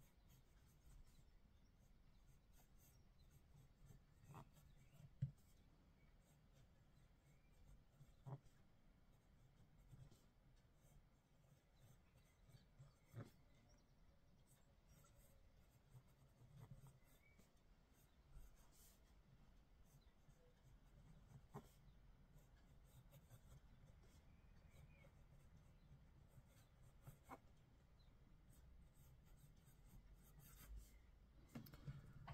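Faint scratch of a fountain pen's double-broad (BB) steel nib gliding across paper as a line of text is written, with a few soft ticks along the way.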